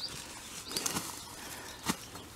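Faint rustling with scattered light clicks and one sharper click near the end.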